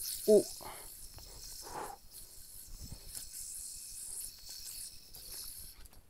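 A yo-yo spinning on its string during string tricks, with a steady high whirring hiss from the spin that stops near the end.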